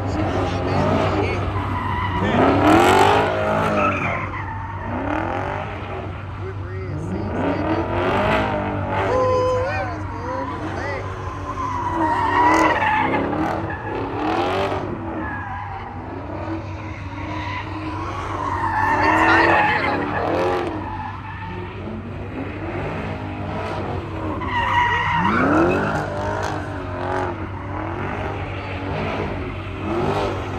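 Muscle cars doing donuts: engines rev up and down over and over, with tires screeching as they break loose on the asphalt. Crowd voices are mixed in.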